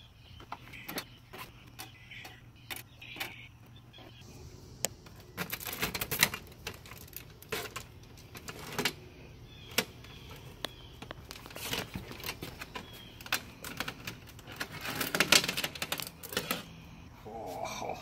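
A motorcycle roller chain, its O-rings removed, being lifted out of a pan of oil. Its links click and rattle against each other and the pan in several spells of quick clicking.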